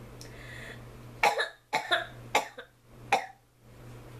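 A woman coughing in a fit: a short intake of breath, then a run of sharp coughs from about a second in. She has choked on something and is coughing to clear her throat.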